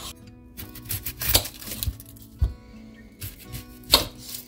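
A few separate knife strokes on a bamboo cutting board as vegetables are sliced, over soft background music.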